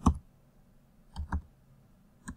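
Computer keyboard keystrokes as a word is typed: one sharp key click at the start, then two quick ones about a second in.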